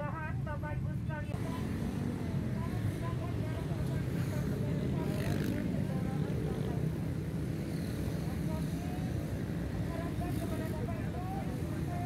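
Street traffic of many motorcycles stopped and idling in a queue, a steady low rumble of small engines, with people talking in the background.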